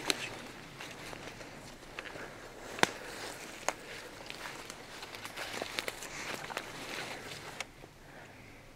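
Footsteps of several people walking, a steady scuffing with a few sharp clicks scattered through it, the loudest a little under three seconds in.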